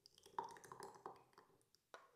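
Faint pouring of runny rice pudding from a steel mixing bowl through a plastic funnel into a drinking glass, with a small tick near the start and another near the end.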